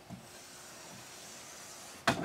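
Dry-erase marker drawn along a whiteboard in one continuous stroke: a faint, steady hiss.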